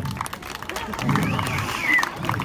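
Street crowd watching a fire-juggling act: voices and some scattered clapping, with a high call that rises and then falls in pitch over the second half.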